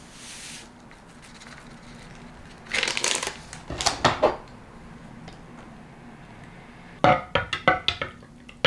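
Hot chocolate powder poured from a paper packet into a ceramic mug with a brief hiss, then a few short bouts of handling on the counter. Near the end a knife stirs the drink, clinking quickly against the inside of the mug.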